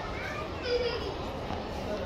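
Children's voices and chatter, with a child's high-pitched voice about half a second in.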